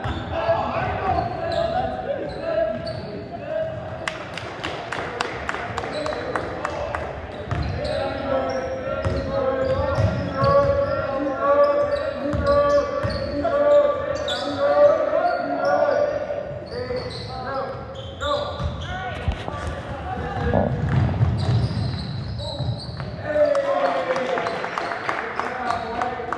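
A basketball bouncing on a hardwood gym floor during play, with players and spectators calling out and shouting in the echoing hall. There is a run of sharp knocks about four seconds in.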